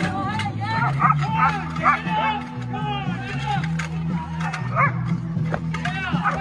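A dog barking repeatedly in quick succession over background music with a steady low bass line.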